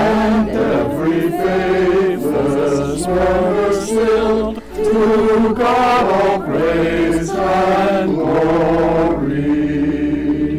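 A small mixed choir of men and women singing a cappella in harmony, several voices holding sustained notes in phrases, with a brief breath a little before halfway. The phrase ends on a held chord near the end.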